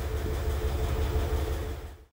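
Steady low hum and hiss of room background noise, like a ventilation or machine hum, that fades out near the end and cuts to silence.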